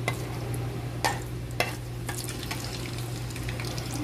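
Whole spices (bay leaves, cinnamon, cardamom pods and cumin seeds) frying in hot oil in a pan: a fine, steady crackle with a few sharper pops, the loudest about one second in and again half a second later, over a steady low hum.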